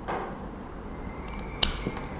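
Bypass pruning shears with an SK5 steel blade snipping through a small branch: one sharp snap about one and a half seconds in, with a couple of faint clicks around it.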